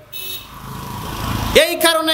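Rumble of a passing motor vehicle, growing louder over about a second and a half, then cut short as a man's voice resumes near the end.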